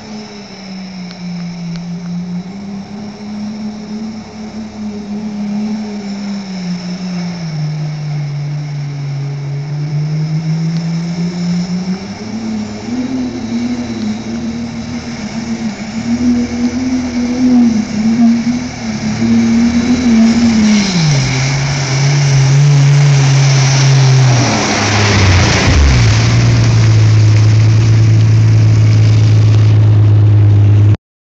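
Turbocharged off-road truck engine working under varying throttle as it pushes through deep swamp water, growing louder as it approaches. About five seconds before the end, a surge of rushing, splashing water. The engine then runs steady and loud close by.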